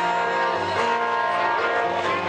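Live acoustic band playing, with guitars holding steady chords that run on without a break.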